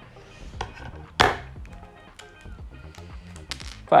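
Small LEDs being pried out of their kit packaging by hand: one sharp snap about a second in and lighter clicks and rustles, over soft background music.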